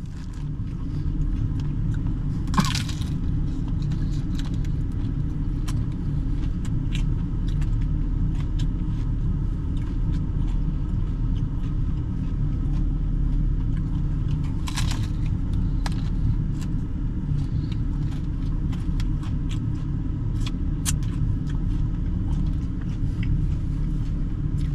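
Steady low rumble of a pickup truck's engine idling, heard from inside the cab. Scattered light clicks run through it, and there are brief rustles twice, about two and a half seconds in and again near the middle.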